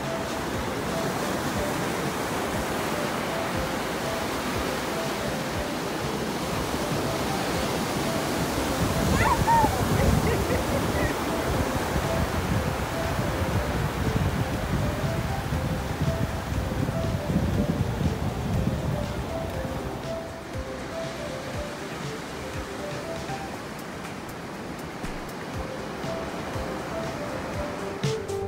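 Ocean surf breaking on a sandy beach, a steady wash of waves that swells in the middle and eases near the end, with soft background music over it.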